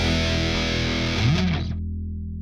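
Distorted electric guitar holding the final chord of a punk-rock song, with a brief pitch bend near the end; the bright upper part cuts off suddenly about three-quarters of the way in, leaving a low ringing that fades.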